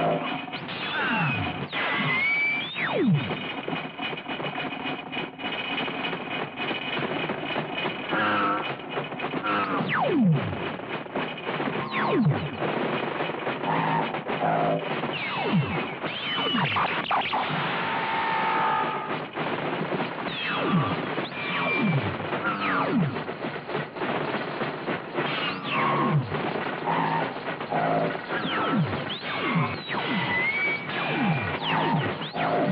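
Electronic film score mixed with synthesized laser-sword effects: a dense stream of falling electronic swoops, one every second or two, over a busy musical background.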